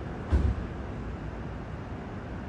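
Steady low background rumble of vehicle-like noise, with one brief low thump about a third of a second in.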